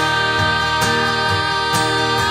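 Music: an acoustic guitar strummed in a steady rhythm, about two strokes a second, under a long held note.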